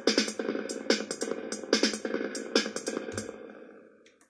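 Analog drum machine beat played through a FuzzDog Spectre Verb reverb pedal into a mini guitar amp. Repeating drum hits with falling-pitch drum sweeps, smeared by the reverb. The beat stops about three seconds in and the reverb tail fades away.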